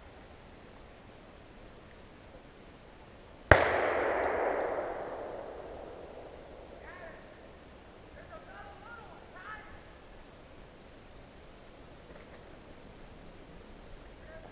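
A single gunshot about three and a half seconds in, its report rolling away through the woods in a long echo that dies out over about three seconds.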